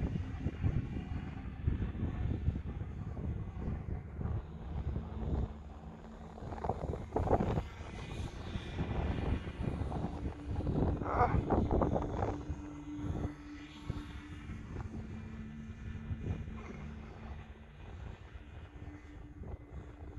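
Distant whine of an RC glider's small electric motor and propeller in flight, a thin steady tone that shifts in pitch as the throttle changes. Wind buffets the microphone with a low rumble that swells and fades.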